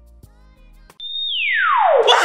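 Soft background music with light struck notes. About halfway through, a high electronic tone starts, holds for a moment, then slides steadily downward and grows louder: a falling-sweep sound effect.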